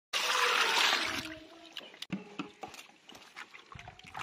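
Water splashing in a steel pot as hands rub and wash loaches in foamy water. A loud rush of splashing fills about the first second, then smaller splashes and clicks follow.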